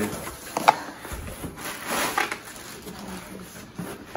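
Handling of a cardboard shipping box: flaps folded back and plastic air-pillow packing rustling and crinkling as it is pulled out, with a sharp knock a little under a second in.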